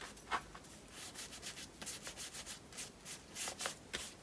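Flat paintbrush loaded with acrylic paint rubbing across paper, a faint run of short, scratchy back-and-forth strokes.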